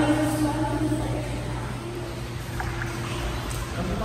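Steady low hum of room ambience with faint background music of held notes that change pitch about halfway through.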